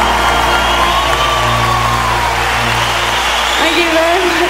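The last held chord and sustained sung note of a live ballad, over a crowd cheering and whooping. The chord cuts off a little after three seconds in, leaving the cheering.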